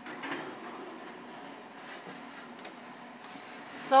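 Faint clicks and scraping of a baking tray being set onto a metal oven rack, over a low steady hum.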